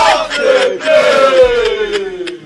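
Several men's voices crying out together in a loud ritual chant: long held wails that slide down in pitch, overlapping, with new cries starting about half a second and about a second in.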